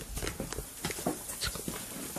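Irregular light clicks and knocks of someone moving about: footsteps and camera handling noise.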